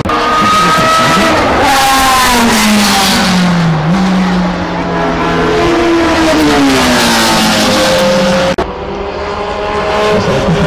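Historic racing car engines passing at speed, the engine note falling, then rising and falling again as the cars go by. It cuts off sharply for an instant about 8.5 seconds in. The sound comes through a small camera microphone that distorts it badly.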